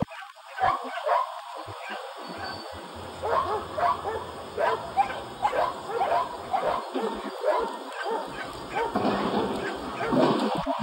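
Belgian Tervuren barking in a quick, steady series, about three barks a second, starting a few seconds in, at a helper in protective gear.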